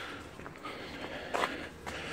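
Footsteps on a paved path, with one short knock about one and a half seconds in.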